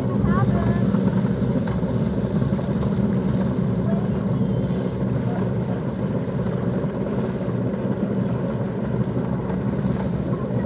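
Motorboat engine idling in gear, a steady low rumble as the ski boat creeps forward to take up slack in the tow rope before pulling a water skier up.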